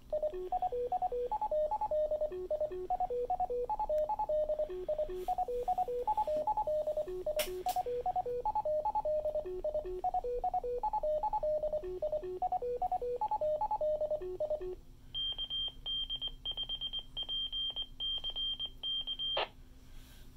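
Byonics Micro-Fox MF-15 fox-hunt transmitter's beacon heard through a handheld radio's speaker: a repeating melody of stepping tones for about fifteen seconds, then a higher-pitched Morse code call sign for about four seconds, stopping just before the end.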